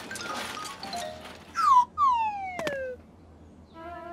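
Cartoon sound effects: a short falling whistle glide, then a longer one sliding down in pitch with a click partway through. Soft music notes come in near the end.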